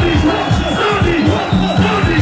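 Loud music with a heavy bass beat over concert loudspeakers, and a large crowd shouting and cheering over it.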